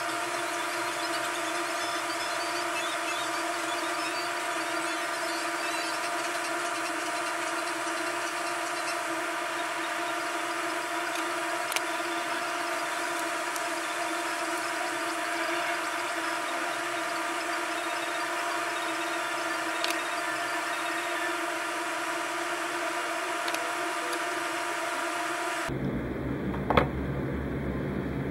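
A steady whining drone made of several even tones over a hiss, unchanging for over twenty seconds, then cutting off suddenly near the end.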